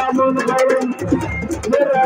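A voice singing a zikr, a Sufi religious chant, in long held, wavering notes, over a quick, steady run of percussion ticks and recurring low thuds.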